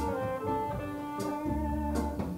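Jazz band music with a guitar playing a melody line in single notes, plus a short sharp hit a little over a second in.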